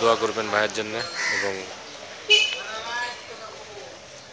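A crow caws once about two seconds in, louder than the man's brief speech just before it.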